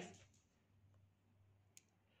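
Near silence: faint room tone with a steady low hum and a single faint click near the end.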